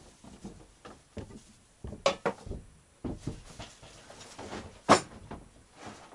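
A series of separate knocks and clunks as gear and boxes are shifted about in the back of a canvas-covered UAZ truck, the loudest one near the end.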